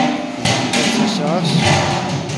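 A large metal cooking-pot lid clattering as it is handled, with a sharp metallic knock at the start and a rattling clatter through the middle.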